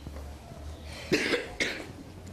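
Two short, breathy vocal sounds from a person, about a second in and again half a second later, over a low steady hum.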